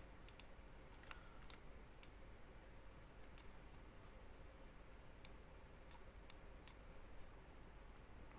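Near silence with faint computer mouse clicks, about ten of them spaced irregularly, over a low hiss.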